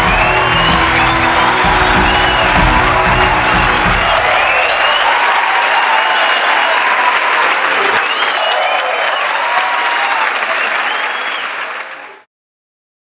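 Large indoor audience applauding, with cheers and whistles rising over the clapping. A music bed with a bass line plays under it and fades out about five seconds in.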